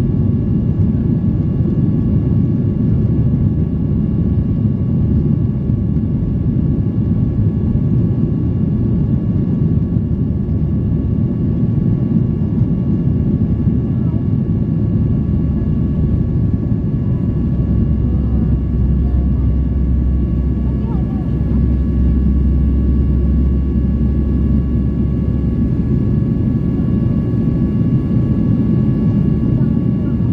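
Steady cabin noise of a Boeing 737-800 in flight, heard inside the cabin from a window seat: the CFM56-7B engines and airflow make a constant low rumble with several thin steady whining tones above it. The low rumble deepens for several seconds in the middle.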